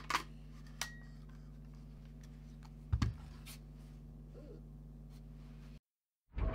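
Sharp clicks and light knocks from a mirrorless camera body and lens being handled, over a steady low hum; the loudest click, with a dull thump, comes about halfway through, and the sound cuts off abruptly shortly before the end.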